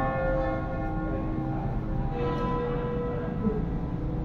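Church bells of the Duomo di San Martino in Tolmezzo ringing, a peal of three bells tuned to B2, C#3 and D#3 and swung with a falling clapper (battaglio cadente). One stroke lands at the start and another about two seconds in, each ringing on in long steady tones.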